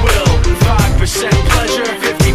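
Hip hop song with a steady, heavy kick-drum beat and rapped vocals.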